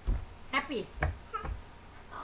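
A toddler's short, high squealing sounds, two or three of them, each falling in pitch, with a few soft knocks.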